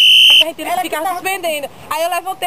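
A short, steady, high-pitched electronic beep lasting about half a second, then people's voices talking.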